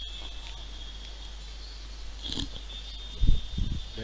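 Steady low electrical hum and a faint high whine from the lecture's microphone, with a short low thump about three seconds in, the loudest sound, like a bump or breath on the microphone.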